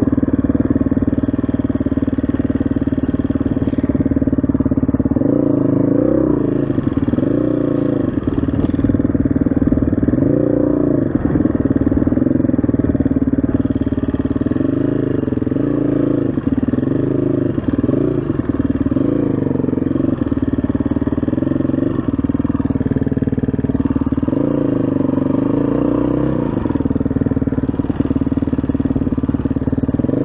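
SWM RS500R's single-cylinder four-stroke engine running under way, its revs rising and falling again and again as the throttle is opened and closed.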